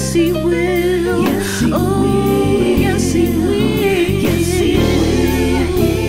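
Gospel song: singing voices holding long notes over a steady bass line, with light high ticks keeping an even beat.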